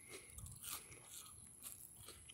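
Faint chewing of a mouthful of ring cereal, with a few soft crunches.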